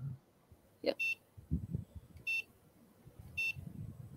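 Three short, high electronic beeps a little over a second apart from a micro:bit-controlled paper mosque kit, each one answering a press of its remote controller as the light inside changes to a random colour.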